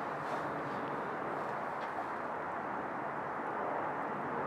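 Steady outdoor background noise, an even low hum and hiss, with a few faint ticks.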